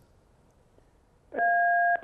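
Near silence for over a second, then a steady two-tone electronic beep lasting about half a second, heard through a telephone line.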